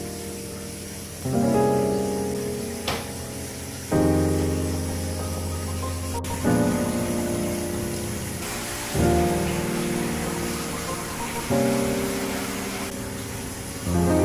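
Background piano music: slow chords struck about every two and a half seconds, each fading before the next. A soft hiss sits under the music for a few seconds in the second half.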